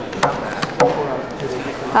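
Playing cards slapped down onto a wooden table during a card game: a few short, sharp slaps in the first second, among voices.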